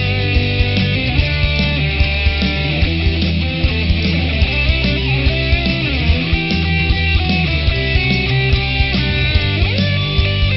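Rock band playing an instrumental section with no singing: electric guitar lines with sliding, bending notes over bass and a steady drum beat.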